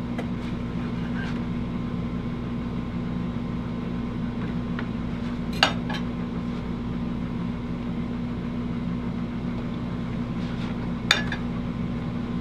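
Steady low hum, with cutlery clinking sharply on a plate twice, about halfway through and near the end.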